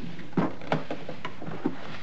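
A drawer being pulled open: a few short knocks and rattles spread over two seconds.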